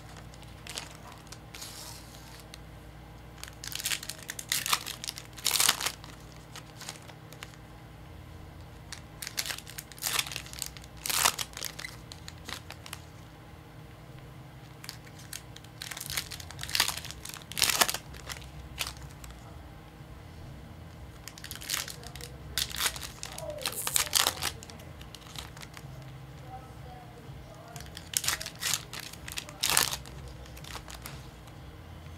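Foil Upper Deck hockey-card packs crinkling and tearing as they are opened by hand, in short bursts every few seconds.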